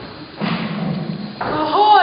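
Sounds of an experimental music performance: a low, rough rumbling sound for about a second, then a sudden change into wavering pitched tones that slide upward near the end.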